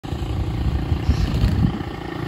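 A small motorbike engine running steadily, heard as a low rumble.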